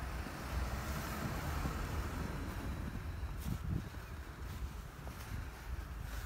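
Wind rumbling on the microphone, with a few faint crunches of snow being packed between gloved hands about halfway through.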